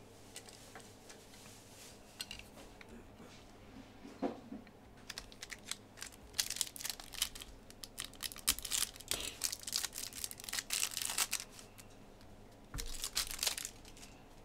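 The wrapper of a Panini Chronicles soccer trading-card pack being torn open and crinkled by hand. A dense run of crackles lasts several seconds, with a second short burst of rustling near the end.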